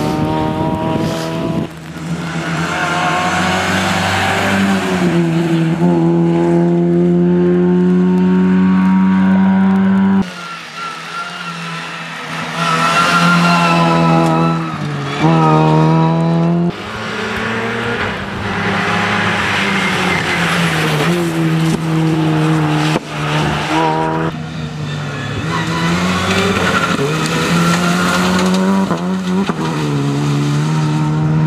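Opel Adam rally car's engine revving hard, its pitch climbing through the gears and dropping on lift-off and downshifts again and again. The sound breaks off suddenly about ten, seventeen and twenty-four seconds in, where one pass is cut to the next.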